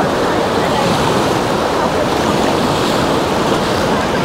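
Sea surf on a sandy beach, heard right at the water's edge: small waves breaking and washing up the sand in a steady rushing wash.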